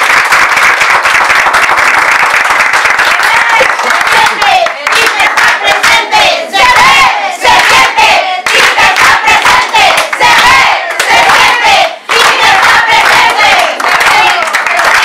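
A crowd applauding and cheering; from about four seconds in, many voices chant together in a repeating rhythm over the clapping.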